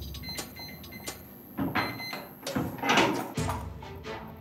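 Clicks and clunks of a small metal safe being worked open by hand: a few sharp clicks, then louder clunks of the door, loudest about three seconds in.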